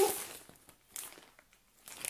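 Plastic packaging crinkling as it is handled and opened, fading over the first half-second, with a small click about a second in and rustling again near the end.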